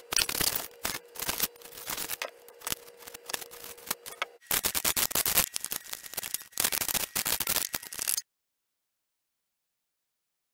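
Serrated knife sawing through pink foam board in rapid, scratchy strokes. After a cut about halfway in, a second stretch of similar scraping and clicking goes on until the sound cuts off suddenly near the end.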